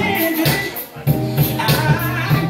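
Dance music with a steady beat and percussion, dipping briefly about a second in before the beat comes back.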